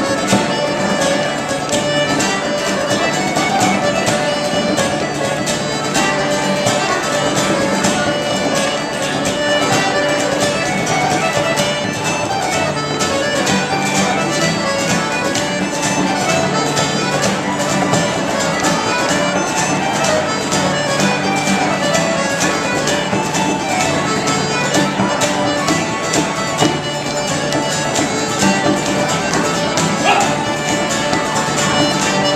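Live Irish instrumental tune on button accordion, mandolin, strummed acoustic guitars and bodhrán, played at a steady, driving pace without singing.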